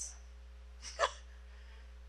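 A woman's short laugh, one brief breathy burst about a second in, over a steady low electrical hum.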